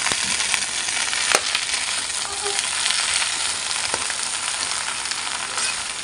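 Freshly added mustard greens frying in hot fat in a wok: a steady sizzling hiss, with a few sharp clicks against the pan.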